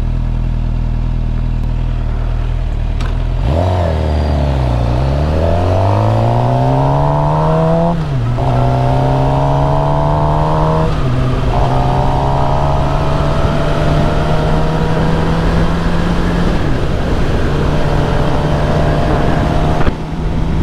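Suzuki GSX-R 750 inline-four motorcycle engine idling steadily for a few seconds, then pulling away. Its note climbs through the gears with three upshifts, each dropping the pitch before it rises again.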